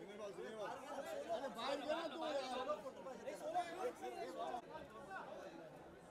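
Crowd chatter: many voices talking over one another at once, with no single speaker standing out.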